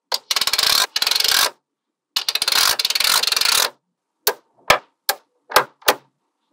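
Small magnetic balls clicking against each other as rows of them are laid and snapped onto a magnet-ball model: two dense runs of rapid metallic clicking, each over a second long, then five single sharp clicks as balls snap into place.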